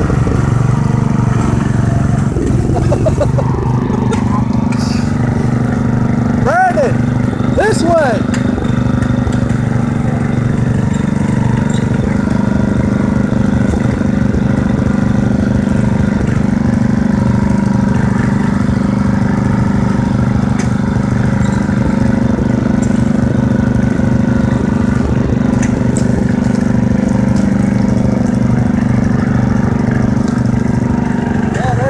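Riding lawn mower engine running steadily as the mower is driven through shallow creek water, with a few brief rising-and-falling sweeps in pitch about a quarter of the way in.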